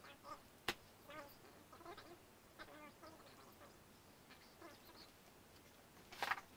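Near silence with faint, sped-up sounds of a large cardboard box being handled: one sharp tap under a second in, then scattered brief high squeaks.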